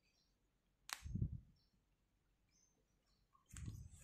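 Faint, short high bird chirps repeating in the background, with a soft thump of hands handling the crocheted fabric about a second in and another near the end.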